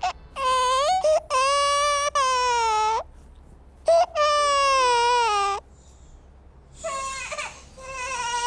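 Infant crying: three long cries of one to two seconds each, then a shorter, fainter cry near the end.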